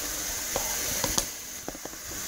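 Steady sizzling hiss of burgers frying in an electric grill machine, with a few light clicks and taps from bottles being handled.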